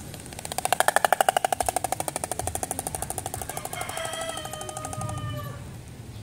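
Oriental stork clattering its bill, a rapid rattle of about a dozen beak claps a second. It is loudest in its first second and fades away over about five seconds. This is the stork's territorial display.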